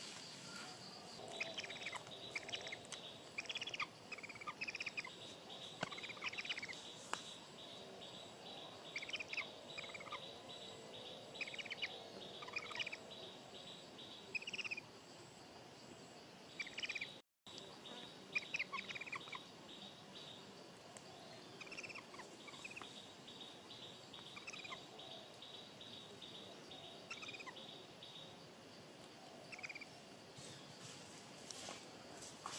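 Faint forest ambience: scattered short bird chirps over a steady, evenly pulsing insect trill. The sound cuts out completely for a moment about seventeen seconds in.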